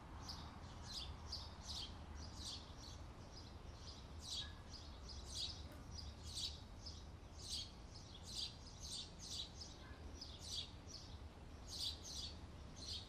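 Small birds chirping: short, high calls come irregularly, about two a second, over a faint low hum.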